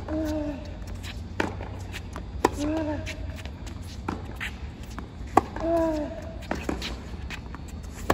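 Tennis rally on a hard court: racquets striking the ball in turn, about every one and a half seconds. The near player gives a short grunt with each of his shots, and the far player's strikes are fainter.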